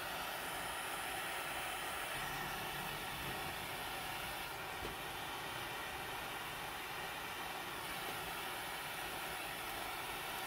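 A steady, even hiss from the gas burner flame heating a porcelain mortar on wire gauze, as magnesium sulfate hydrate is driven of its water.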